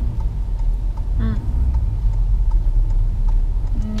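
Steady low road and engine rumble inside a moving Toyota car's cabin, with faint regular ticking.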